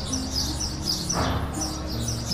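Small birds chirping, short high chirps repeating a few times a second, over held low tones of soft background music.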